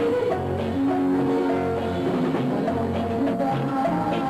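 Band music with electric bass guitar and drums under a melody of held notes that step from one pitch to the next.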